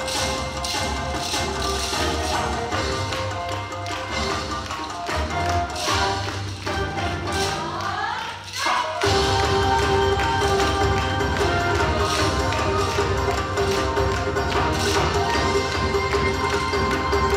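Upbeat yosakoi dance music over a hall sound system, with sharp clacks of wooden naruko clappers in time with the beat. About halfway through the bass drops out and a rising sweep builds, then the full beat returns.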